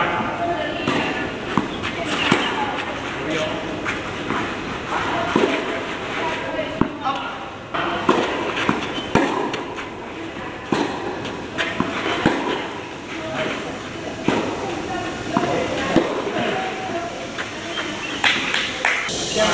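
Tennis balls struck by rackets in a doubles rally: a string of sharp pops, irregularly spaced a second or two apart, over voices in the background.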